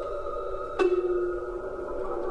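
Avant-garde chamber music for Japanese and Western instruments with electronic tape: several sustained, drone-like tones held together. One sharp attack comes just under a second in and leaves a ringing held note.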